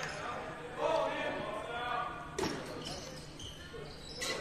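Basketball bouncing on a hardwood court, with a distant voice calling out on the floor and a single sharp knock a little past halfway.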